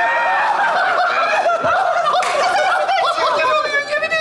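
Many people laughing at once, a live theatre audience together with the performers on stage, in steady sustained laughter with many voices overlapping.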